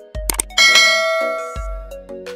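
Outro background music with a beat, over which a couple of quick click sound effects are followed, about half a second in, by a bright bell-like chime that rings and fades over about a second: the click-and-ding effects of an animated subscribe button.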